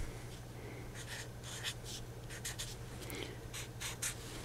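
Felt-tip marker drawn across paper in a series of short, separate strokes, marking arrowheads and letters on a hand-drawn graph.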